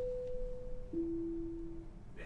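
Two-note pre-announcement chime from a PA system playing back a predefined message: a higher tone held about a second, then a lower one held about a second. It signals that an announcement is about to follow.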